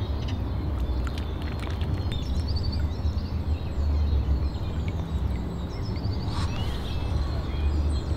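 Outdoor ambience: a steady low rumble with faint bird chirps a few times.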